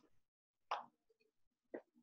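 Near silence, broken by two brief faint sounds, one a little under a second in and one near the end.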